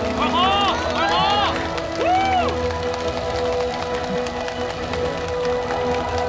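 A small group cheering, chanting a name in several rising-and-falling shouts over the first two and a half seconds, with background music under it that carries on as a long held note.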